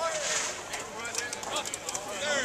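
Voices of football players and coaches calling out across an outdoor field, too distant to make out words, with a few sharp clicks or knocks scattered through.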